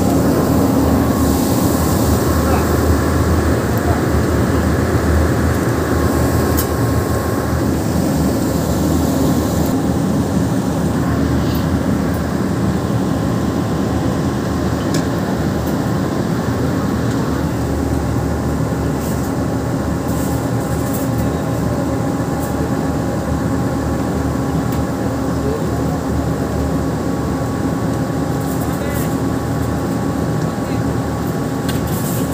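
Indistinct voices over a steady, loud background hum.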